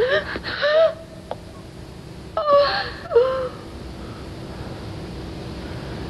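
High-pitched gasping, whimpering cries from a person in shock, in two short bursts: one at the start and one about two and a half seconds in.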